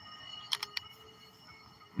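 A pause between a man's sentences: faint steady tones hang in the background, and three quick sharp clicks come about half a second in.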